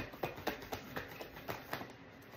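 A tarot deck being shuffled by hand, the cards slipping and snapping against each other in a quick, irregular run of clicks, about six a second.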